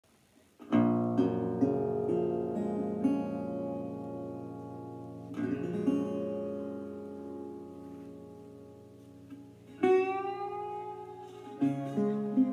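National Style O-14 single-cone resonator guitar played with a brass slide: picked notes and chords that ring out and slowly fade, re-struck about five seconds in. Near the end a fresh note slides upward in pitch.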